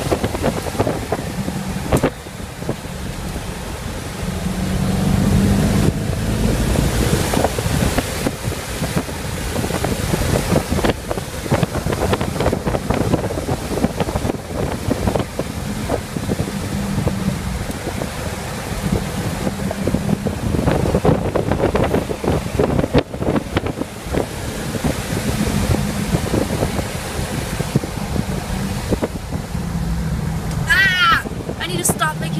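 Road noise inside a moving car: a steady low rumble of tyres and engine, with irregular gusts of wind noise on the microphone.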